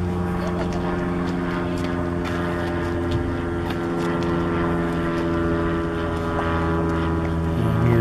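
An engine running steadily at an even, unchanging pitch.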